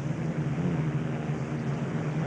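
Unlimited hydroplane's Rolls-Royce Merlin V12 engine running steadily at racing speed, a constant low drone over a hiss of spray and wind.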